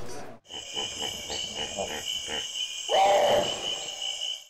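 Production-company logo sound effect for the Magnum Global Media ident. A steady high-pitched drone with a soft, regular pulsing under it starts about half a second in, and a louder pitched swell comes in about three seconds in.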